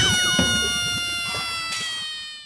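Title-card sound effect of a show ident: a loud hit rings on as a held, slowly sinking tone that begins to fade near the end.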